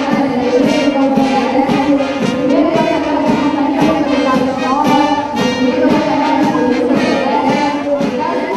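Military brass band playing a march, brass melody over a steady drumbeat of about two beats a second.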